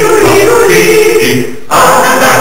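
Several voices singing together in a song. The singing dips briefly about one and a half seconds in, then comes back in at full strength.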